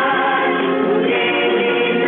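A choir singing a gospel song, several voices holding long notes together. The sound is thin and muffled, with no high end.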